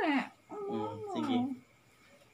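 Wordless vocal sounds from a person: a short falling sound at the start, then a longer drawn-out one with a wavering, sliding pitch, like whining.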